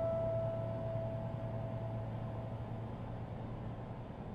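The last piano note of a track dying away over the first two or three seconds, leaving a faint low hum and hiss.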